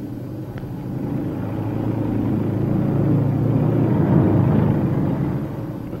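Armored vehicle rumbling as it rolls past, building up toward the middle and fading near the end.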